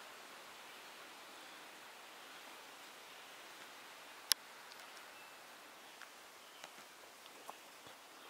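Faint, steady outdoor background hiss. There is one sharp click about halfway through and a few fainter ticks near the end.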